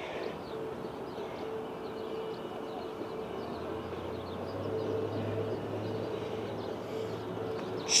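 Outdoor ambience: a steady low mechanical hum with a background wash, and faint bird chirps high above it.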